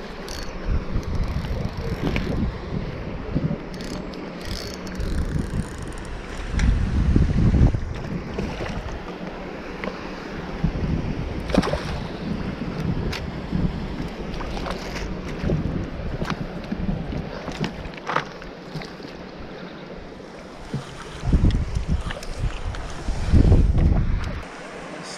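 Wind rumbling on a body-worn camera's microphone, heaviest in a few surges, with scattered handling knocks and clicks as a fish is played on a float rod and spinning reel and lifted in a landing net.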